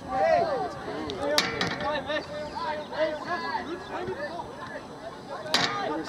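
Several voices overlapping in short calls and shouts across a soccer field, with two sharp knocks, one about a second and a half in and one near the end.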